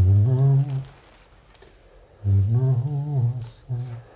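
A person humming a tune in a low voice, in two phrases: a short one at the start and a longer one from about two seconds in until near the end.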